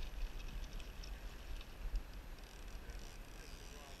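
Steady low rumble and hiss of wind on the camera microphone, over the wash of a shallow, riffling river.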